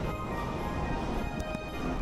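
R68 subway train pulling into the station: a steady rumble and hiss of steel wheels on rail, with a few wheel clicks over rail joints and faint thin steady tones above.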